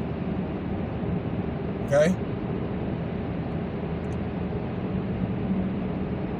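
Steady road and engine noise of a moving car, heard inside its cabin, with a faint low hum.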